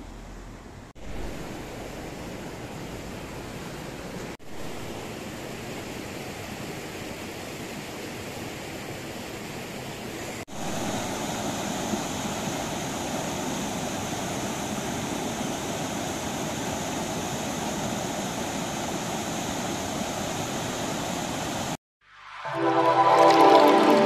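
River water rushing over rocks and stones in a steady wash, breaking off briefly a few times; about ten seconds in it turns louder and fuller, the sound of white-water rapids.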